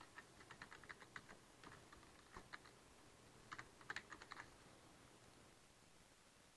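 Faint computer keyboard typing: quick runs of keystrokes for the first two and a half seconds, a second short flurry about three and a half seconds in, then it stops.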